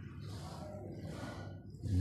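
A man's in-breath, a short intake of air between slowly chanted Arabic sermon phrases, heard faintly over room noise.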